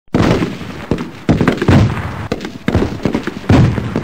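Intro sound effect of a rapid series of heavy bangs and booms, like battle gunfire and explosions, about seven or eight in the space of four seconds.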